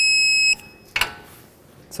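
Digital torque wrench giving one steady high-pitched beep that stops about half a second in, signalling the bolt has reached its set torque of 66 foot-pounds; a short sharp click follows about a second in.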